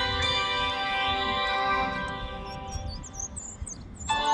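Soft instrumental background music with long held tones, fading out over the last second or so. Faint high, sweeping bird chirps come in near the end.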